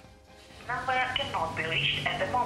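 A voice over a telephone line, thin and tinny, starting about two-thirds of a second in.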